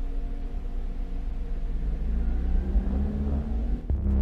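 A car engine running with a low rumble, its pitch rising over the last two seconds as it speeds up, then cut off suddenly just before the end.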